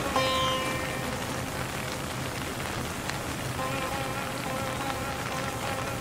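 Steady rain falling, mixed with soft Indian instrumental music. A held note fades out over the first second or two, and a gentle melodic line comes back in after about three and a half seconds.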